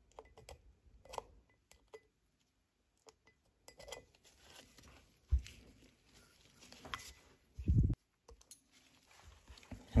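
Faint, scattered small clicks and taps of a screwdriver and gloved fingers working a rubber dust boot into the groove around a brake caliper piston. There is a short low thump about five seconds in and a brief low rumble near eight seconds.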